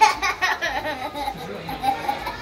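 A small child laughing, a string of quick high-pitched laughs.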